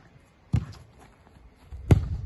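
A football thuds against a player's chest as he controls it, about half a second in, then is kicked hard near the end, the loudest thud.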